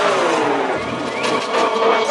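Electronic dance-music mix at a transition: the layered tones slide downward in pitch over about the first second, then a noisier rising sweep follows before the steady track returns.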